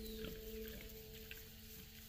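Soft background music with a held tone, fading out near the end, over faint short squeaks and grunts from a litter of newborn piglets.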